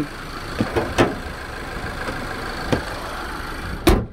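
2019 Subaru Crosstrek's flat-four boxer engine idling steadily under an open hood, with a couple of light clicks. Near the end the hood is slammed shut with one loud bang.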